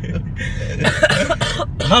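Short breathy bursts from a man's voice around the middle, coughing or laughing, over the low rumble of a car cabin.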